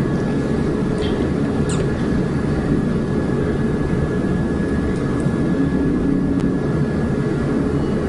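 Steady low rumbling hum of background noise with a faint steady high tone above it, unchanging throughout.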